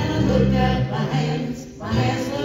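Live worship music: a small church band with acoustic and electric guitars accompanying singers on a gospel song, with a brief break between sung phrases near the end.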